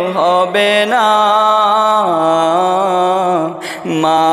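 A single voice singing a Bengali gojol, an Islamic devotional song, in long held notes that glide slowly up and down without clear words, with a short break near the end.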